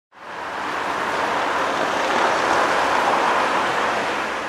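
A loud, even rushing noise that fades in just after the start, swells through the middle and eases off towards the end.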